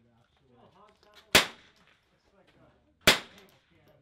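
Two .22 LR rimfire rifle shots about a second and three quarters apart, each a sharp crack with a short tail.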